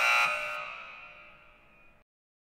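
A buzzer sound effect of the wrong-answer kind, sounding abruptly with a loud harsh tone and fading away over about a second and a half.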